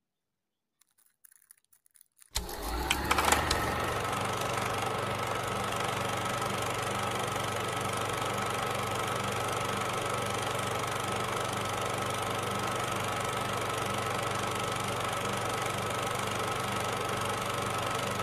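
Silence, then about two seconds in a steady machine-like hum starts abruptly: an even low drone with a thin high tone over it, not changing in level or pitch.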